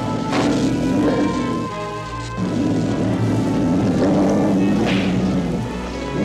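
Tense cartoon background score with sustained tones and a low pulse, cut by two short noisy sound-effect hits, one about half a second in and one about five seconds in.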